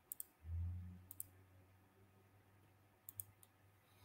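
Faint computer mouse clicks: a quick pair at the start, another pair about a second in, and three more near the end. A low thump follows just after the first pair.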